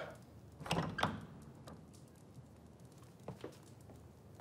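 A wooden door being opened, with two short sounds close together about a second in, answering a knock. Two faint brief clicks follow near the end.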